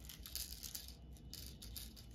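Small resin diamond-painting drills rattling with light, faint clicks against a plastic tray as it is handled.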